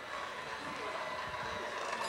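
Low background murmur of several people talking at once in a busy kitchen, with no single close voice.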